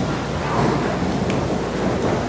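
A congregation sitting down in wooden pews, heard as a steady low noise of shuffling and rustling.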